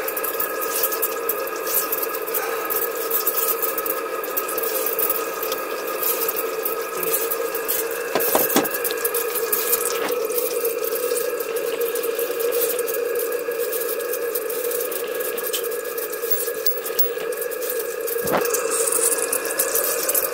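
Live-steam model boiler and engine under low steam pressure: a steady hiss of steam with thin, wavering whistle tones held underneath, as the steam whistle tries to sound but doesn't fully blow, needing freeing up. A few light clicks come through.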